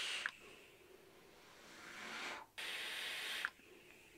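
Faint hissing of air and breath through an electronic cigarette, a Stentorian AT-7 box mod, as a vaper takes a long draw and blows out a large cloud. It comes as a few separate stretches of soft hiss with short quiet gaps between them.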